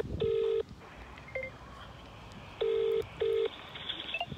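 British-style telephone ringback tone through a phone's loudspeaker, the double 'brr-brr' ring heard twice while an outgoing call rings out before it is answered.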